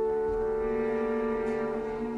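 Orchestra holding a sustained brass chord, French horns to the fore, steady in pitch and loudness.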